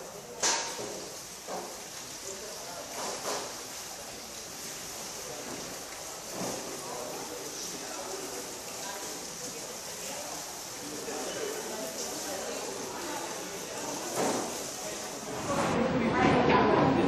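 Stainless steel kettles and pots clinking now and then, the sharpest knock about half a second in, over a steady hiss and faint background chatter.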